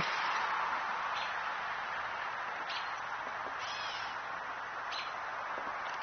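Birds chirping a few times over a steady outdoor background hiss.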